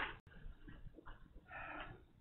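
Faint classroom room sound in a pause between words, with a brief soft voice-like sound late on.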